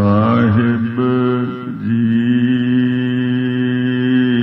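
A man's voice starts a devotional chant abruptly, sliding down in pitch over the first second, then after a short break holding a long, steady note.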